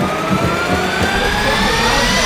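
A transition sound effect: a buzzy tone with overtones climbing steadily in pitch over a rushing noise, a riser building toward a cut.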